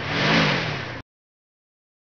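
Stock vehicle engine sound effect of a van pulling away, the engine note rising and then falling, cutting off abruptly about a second in.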